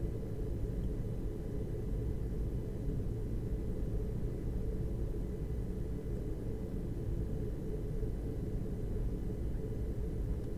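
Steady low background rumble with a faint hum, even throughout, with no distinct events.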